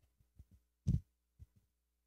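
A handful of short, soft low thumps on a handheld microphone, the loudest about a second in, with a brief muttered "wow".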